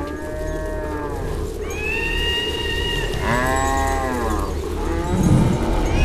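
Several cows mooing, a few drawn-out calls one after another, over a steady low rumble with a low burst near the end.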